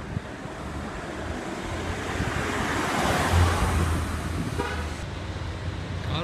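A car passing along the street close by, its engine and tyre noise swelling to a peak about halfway through and then fading.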